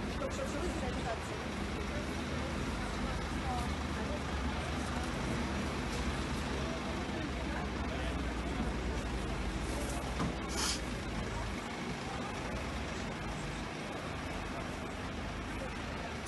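Outdoor background of indistinct distant voices over a steady low engine rumble, which drops away about eleven and a half seconds in.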